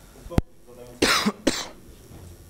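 A person coughs twice about a second in, the two coughs loud and a moment apart, after a single sharp click.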